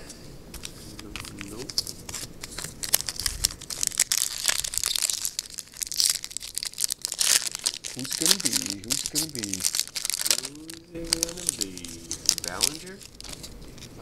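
Foil wrapper of a Topps baseball card pack being torn open and crinkled by hand in a long series of sharp crackles. A wordless, murmuring voice comes in during the second half.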